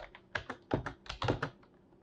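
Computer keyboard keystrokes: a quick run of key presses for about a second and a half, then the typing stops.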